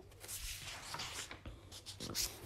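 Faint, irregular rustling and rubbing, like paper being handled, such as a book page being shifted or turned.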